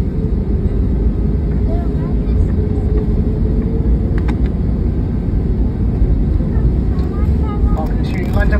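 Jet airliner cabin noise while taxiing: a steady low rumble of the engines and rolling gear, with a steady hum that fades after about three seconds.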